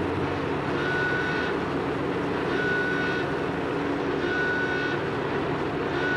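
Steady machinery or vehicle rumble with a high electronic beep repeating about every second and a half, each beep lasting under a second.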